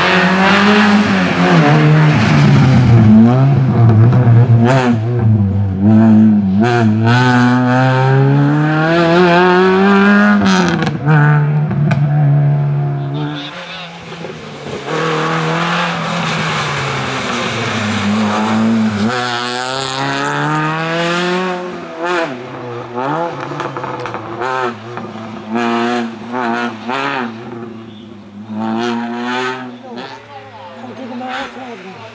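Small hatchback race car's engine revving hard up and down as it threads slalom cone chicanes, pitch rising and falling with each lift and gear change. It dips briefly about halfway through, comes back strongly, then sounds in weaker bursts near the end.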